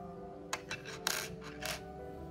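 Small steel hex key being handled and set down on a wooden tabletop: a few light metallic clicks and a short scrape in the second half, over soft background music.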